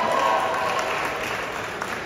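Audience applauding, dying down gradually.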